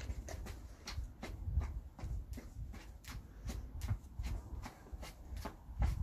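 Running-shoe footfalls on stone paving slabs from jogging on the spot, a steady patter of about three soft steps a second, with a low rumble underneath.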